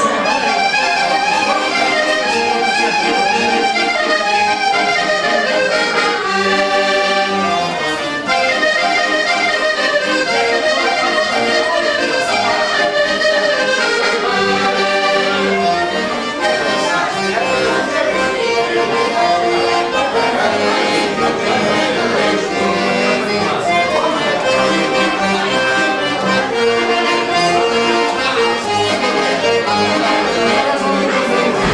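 Diatonic button accordions, a Piermaria and a second red button accordion, playing a tune together without a break.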